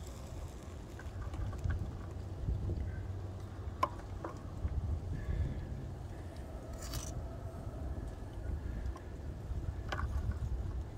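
Steady low rumble of wind on the microphone, with a couple of sharp metallic clicks about four seconds in and a brief scrape near seven seconds as a steel ladle knocks against the steel muffin-tin ingot moulds while molten wheel-weight lead alloy is poured.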